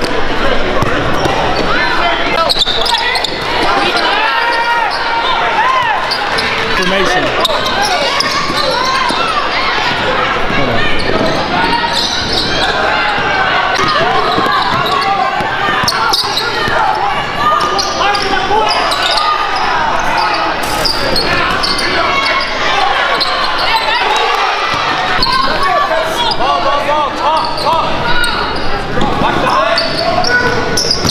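Live sound of an indoor basketball game: many voices of players and spectators calling out over one another, with a basketball bouncing on the hardwood court. It echoes through a large gym.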